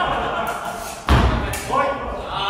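A longsword fencing exchange: voices shouting, then a loud thud about a second in and a lighter knock just after it.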